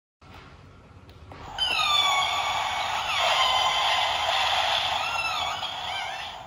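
Recorded orca calls: several high whistles that glide down and curve up over a steady hiss, starting faint and growing louder about a second and a half in.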